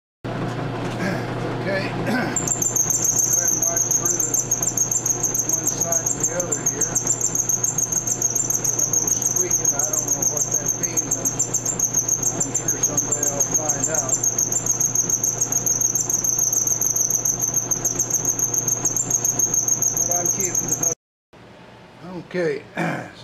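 A milling machine's end mill cutting a groove in aluminum bar over the motor's steady hum, with a loud high-pitched squeal that sets in about two seconds in and pulses rapidly as the cutter works. It stops abruptly near the end.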